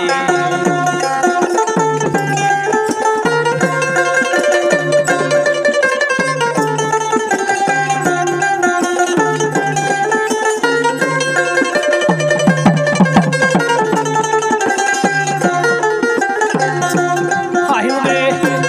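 Bengali baul folk music: a dotara plucks a melody over a steady hand-drum beat of a little more than one stroke a second.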